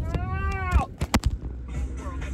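A woman's short "ahhh" cry, rising then falling in pitch, as her phone slips, followed by a few sharp knocks of the phone being knocked about and caught, over the low rumble of a car interior.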